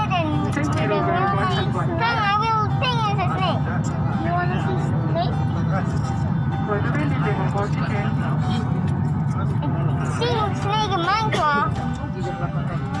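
Steady low hum of an airliner cabin, with high-pitched voices and music over it.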